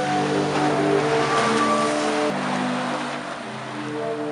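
Zadar Sea Organ, sea waves forcing air through pipes under marble steps. It sounds several overlapping sustained, pipe-like tones whose chord shifts every second or so, without any beat, over the wash of the sea.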